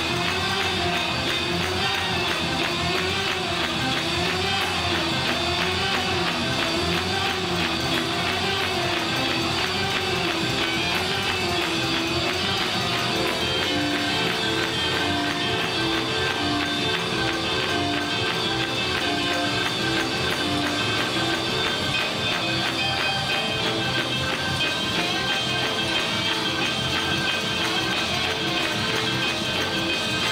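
Live church band music: trombones and trumpets playing over a drum kit keeping a steady beat. A held, wavering note runs through the first half, and from about halfway a run of short repeated notes takes over.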